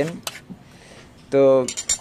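A quick run of light metallic clicks near the end: a metal spatula tapping against the iron karahi as it is lifted out of the simmering curry.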